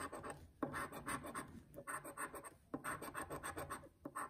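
A scratch-off lottery ticket's coating being scraped off with a coin-sized disc, in quick rasping strokes. The scratching comes in about four bursts, each roughly a second long, with short pauses between them.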